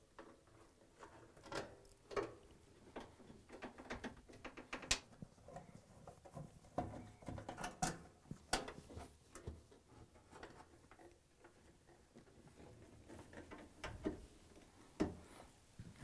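Faint, scattered clicks, taps and scrapes of screws being driven by hand into the sheet-metal rear panel of a front-load washer, with a few sharper clicks.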